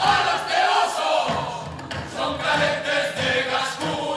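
Several men's voices singing a chorus together.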